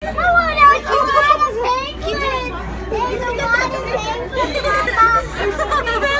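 Young children squealing and shouting excitedly in high-pitched voices, over a steady low hum.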